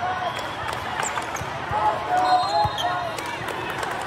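Indoor volleyball play: sharp thuds of the ball being hit and bouncing, with a strong one a little before three seconds in, over calling voices of players and spectators in a large hall.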